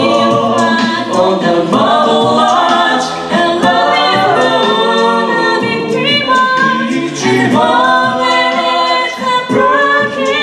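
Five-voice a cappella group singing close harmony, held chords that change every second or two, with no instruments.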